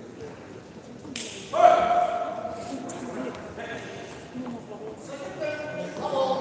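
Badminton play on an indoor court: a racket strikes the shuttlecock with a single sharp crack about a second in, followed half a second later by a loud held tone of about a second, the loudest moment, with voices near the end.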